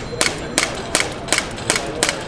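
A CO2-powered pistol firing a quick string of five sharp shots, about three a second.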